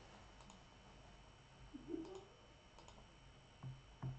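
A few faint, scattered computer mouse clicks and light desk taps over near-silent room tone.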